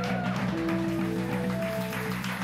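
Live band music with a keyboard playing, steady low notes underneath and held notes above.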